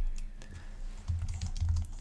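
Typing on a computer keyboard: an irregular run of quick key clicks.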